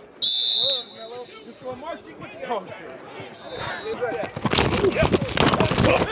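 A sports whistle gives one short, loud blast a quarter-second in, with a fainter short whistle near the middle, over background voices. In the last two seconds a rapid clatter of footsteps and pad contact builds as players run a tackling drill.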